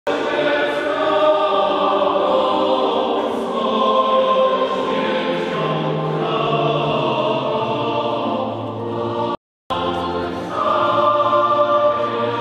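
Choir singing a hymn in sustained notes during the Mass's entrance procession. The singing breaks off completely for a moment about nine and a half seconds in, then resumes.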